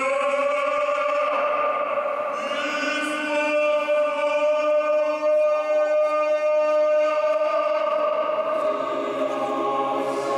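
Voices singing Orthodox liturgical chant in long, held notes that shift pitch only a few times.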